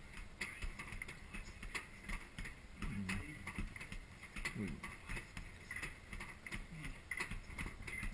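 Fists repeatedly punching a hanging heavy bag: a fast, uneven run of dull thuds, about two to three a second.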